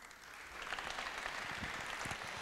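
Audience applause, rising to a steady level within about the first half second.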